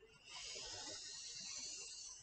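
Orange dry-erase marker drawn across a whiteboard in one long stroke: a steady high hiss that starts about a third of a second in as the arc of a circle is drawn.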